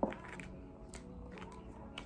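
Soft background music with a few light clicks and slides of paper cards being handled and laid on a cloth-covered table.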